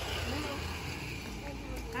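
Faint voices of people talking, over a low steady rumble.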